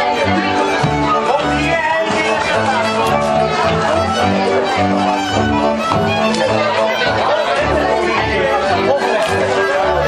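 Hungarian folk string band, fiddle and double bass, playing a dance tune: the bass marks a steady beat under the fiddle melody. People talk and chatter over the music.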